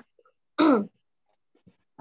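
A woman clearing her throat once: a short voiced 'ahem' that falls in pitch, just before she starts to recite.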